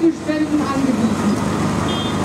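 A woman's voice amplified through a public-address loudspeaker, speaking in the first half and then pausing, over steady background noise.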